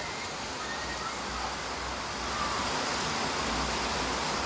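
Steady, even background hiss with no distinct sound event, as in a recording's noise floor between spoken phrases.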